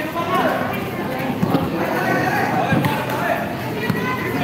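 A basketball being dribbled on a concrete court, a few short bounces, over the steady chatter of a crowd of spectators.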